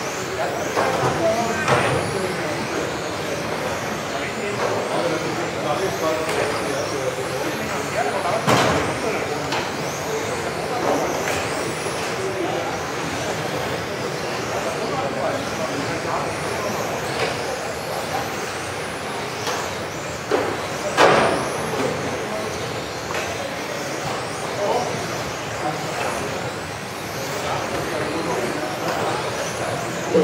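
A pack of electric 1:10 radio-controlled touring cars racing around an indoor track, their motors whining up in pitch again and again as they accelerate out of corners, echoing in a large hall. Sharp knocks break in now and then, the loudest about 8 s and 21 s in, as cars hit each other or the track barriers.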